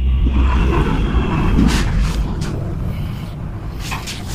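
Lift car travelling: a steady low hum and rumble, with a few short clicks.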